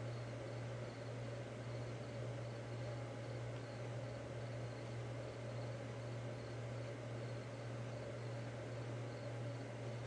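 Steady low electrical hum with a faint even hiss, the background noise of the recording setup, with a faint repeating high tone above it.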